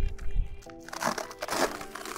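Crinkling and rustling of a foil-lined insulated delivery backpack as its stiff bottom panel is handled, loudest in the second half, over steady background music.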